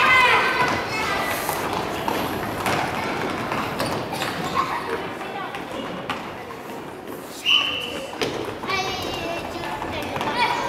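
Children's shouts and voices echoing in a gym hall, with scattered thuds of a ball being kicked and feet on the wooden floor. A short, shrill high note cuts through about seven and a half seconds in.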